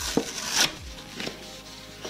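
A paperboard meal sleeve rustling and crackling as it is handled and unfolded, in a few short bursts, the loudest about half a second in.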